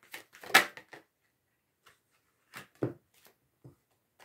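A deck of cards being shuffled by hand: a quick run of card snaps and clicks in the first second, then a pause, then a few separate card taps.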